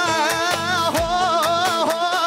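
Band music: a wavering, ornamented lead melody over a steady drum beat.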